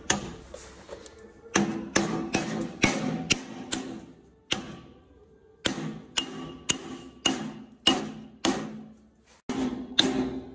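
A mallet tapping a steel dust cap onto a greased trailer wheel hub to seat it: about a dozen sharp blows in quick runs of two or three a second, with a pause near the middle, each leaving a short metallic ring.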